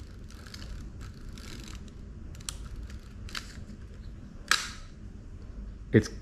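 Film-advance crank of a Zenza Bronica medium-format camera being wound, a soft mechanical whirr of gears broken by several clicks, the loudest about four and a half seconds in, as the 120 film is wound on toward frame one.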